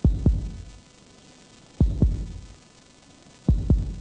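Heartbeat-style suspense sound effect: three deep double thumps, one pair about every 1.8 seconds, played while the winner of an award is about to be named.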